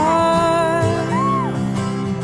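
A song: a sung melody held in long, gliding notes over instrumental accompaniment.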